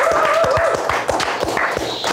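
Hands clapping in a quick, even rhythm of about four to five claps a second, over a held, slightly wavering tone.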